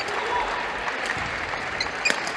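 Applause: spectators and team benches clapping, with voices calling out in the background.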